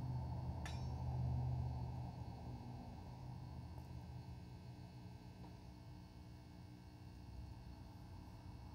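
Low steady electrical hum from the RF-driven high-voltage capacitor rig while a light bulb is held to its corona ring. The hum is loudest for the first two seconds and then fades, with one sharp click under a second in.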